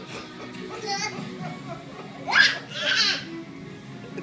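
Young children squealing and shrieking as they play, over music from a television. The loudest is a rising squeal about two and a half seconds in, followed by a second cry.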